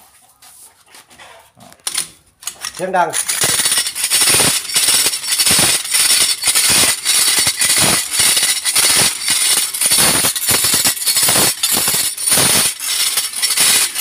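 Sugarcane stalk being scraped through a homemade post-mounted scraper, the blade rasping the rind off in a loud, rough, rapid run of strokes that starts about three seconds in.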